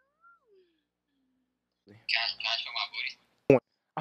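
A high-pitched voice coming through a video-chat connection lets out about a second of squeal-like vocalising, followed by one short, loud vocal burst near the end. A faint falling glide is heard just before.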